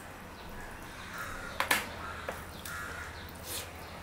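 A crow cawing twice, a harsh call about a second in and another near the three-second mark. Between the calls comes a sharp click, the loudest sound here, with fingers mixing rice on a steel plate.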